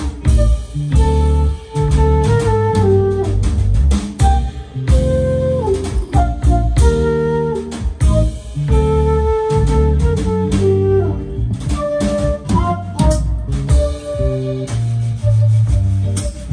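Live band music: a flute playing a moving melody over bass and drums.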